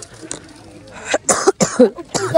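A person coughing three or four times in quick succession, starting about a second in.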